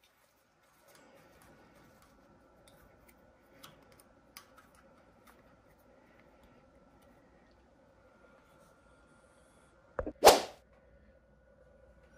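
Faint steady hum with a few soft ticks as small screws are handled and started by hand into a mill table stop. Near the end, one sharp, loud, short burst of noise.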